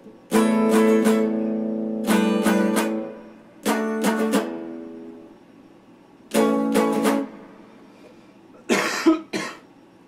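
Electric guitar strummed in four separate chords, each struck with a few quick strokes and left to ring and fade before the next. A short scratchy burst follows near the end.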